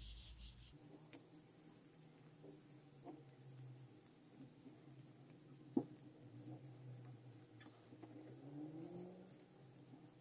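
Faint clicking and rubbing of metal knitting needles and yarn as knit stitches are worked, with one sharper needle click about six seconds in.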